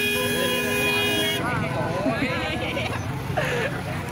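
A vehicle horn sounds one steady multi-tone blast for about the first second and a half, then stops, leaving a crowd chattering and laughing.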